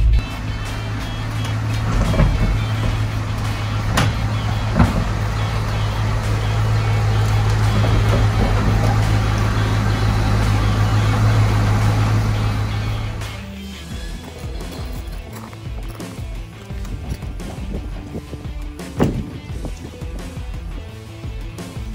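A 1970 Ford Mustang Mach 1's 428 Cobra Jet V8 running with a steady low drone, which stops about thirteen and a half seconds in, under background music. A few sharp knocks sound along the way.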